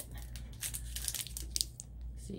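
Clear plastic packaging crinkling as a pack of magnet tiles is handled, a run of short crackles.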